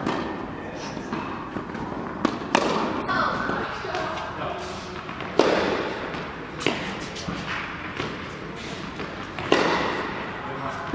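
Tennis balls struck with rackets: sharp hits a second or more apart, the loudest about halfway through and near the end, each ringing on in a large hall, over background voices.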